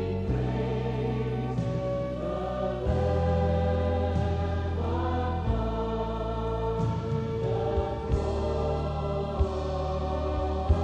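Worship music: a choir of voices singing together over band accompaniment, with sustained chords and a moving bass line.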